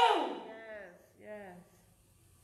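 A woman's voice through a microphone, a drawn-out vocal tone falling in pitch and trailing away, then one short second vocal sound about a second and a half in.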